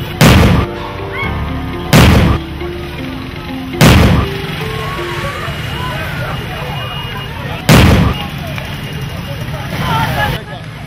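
Four loud bangs of police fire, the sound of gunshots or tear-gas launches aimed at breaking up a crowd, over the noise of a crowd's voices. The first three come about two seconds apart; the fourth follows nearly four seconds later.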